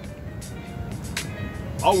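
Outdoor city background in a pause between words: a steady low rumble with faint music, and a couple of short clicks. A man's voice comes back near the end.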